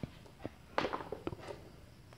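Faint rustling and a few light clicks from insulated wires being handled, in a pause between narration.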